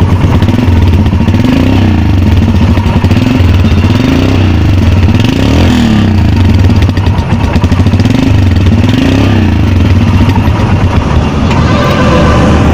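Royal Enfield Himalayan's fuel-injected 410 cc single-cylinder engine running, heard close at its stock exhaust silencer, the throttle blipped over and over so the engine note rises and falls about once a second.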